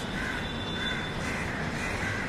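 A bird calling over and over, short calls repeating about twice a second, over a steady low background rumble.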